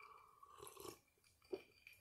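Faint sipping and swallowing from a glass of iced soda, with a single small click about one and a half seconds in.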